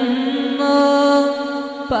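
Male voice singing a Bengali gojol (Islamic devotional song), holding a long sustained note over a steady vocal drone, with the sound dipping briefly just before the next line begins.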